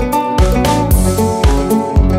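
Background music with guitar over a steady beat, about two beats a second.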